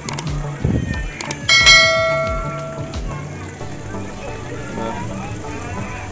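A single bell-like metallic ding about a second and a half in, ringing out and fading over about a second and a half, amid faint background voices.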